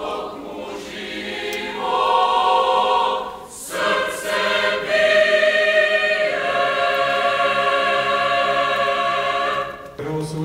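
A choir singing in long held chords that shift every second or two, with a brief break a little after three seconds in. The singing stops just before the end.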